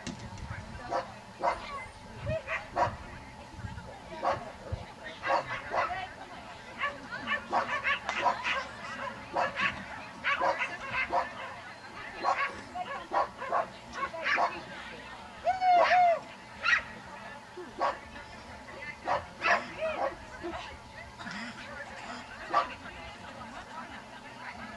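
Dog barking and yipping in short, high-pitched barks, one or two a second, the loudest about two-thirds of the way through.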